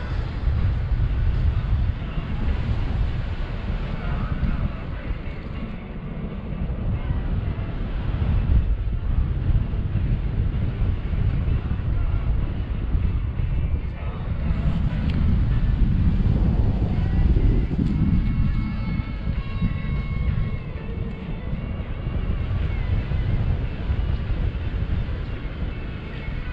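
Wind buffeting the microphone of a camera on a paraglider in flight: a steady low rumble that swells and eases with the airflow.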